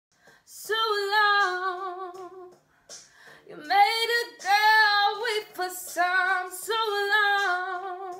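A woman singing unaccompanied, a cappella, in three phrases of long held notes that bend slightly in pitch, starting just under a second in.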